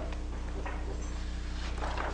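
Steady low electrical hum with background hiss, a faint click about a third of the way in, and a faint paper rustle near the end as a flip-chart page is lifted.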